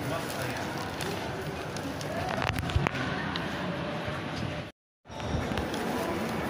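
Shopping-mall ambience: a steady murmur of background voices, with a few sharp clicks about two and a half seconds in. The sound cuts out completely for a moment a little before five seconds in.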